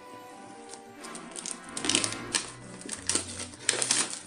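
Clear plastic shrink-wrap being slit and peeled off a cardboard game box, crinkling with many sharp little crackles and ticks from about a second in, over soft background music.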